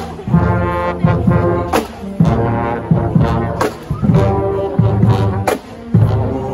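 Marching band brass section, trombones and trumpets, playing a tune live at close range. Strong low brass notes, with sharp drum hits about once a second.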